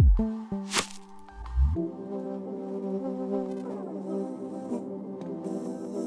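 Background music: a few short held notes and a brief sweep in the first two seconds, then sustained chords that hold to the end.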